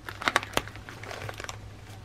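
Clear plastic sleeves and sticker sheets crinkling as they are handled and shuffled, with several sharp crackles.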